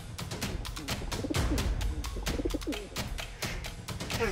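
Racing pigeons cooing in a crowded transport crate, a few low wavering coos about a second in and again past the middle, over background music with a quick percussive beat.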